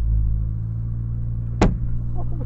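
A car's engine and road noise heard from inside the moving car, a steady low hum. A single sharp thud about one and a half seconds in, from the thrown fish striking the car.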